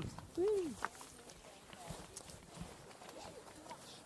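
A single short, drawn-out voice call in the first second, then faint scattered clicks and scuffs of people and gear moving on rocky ground.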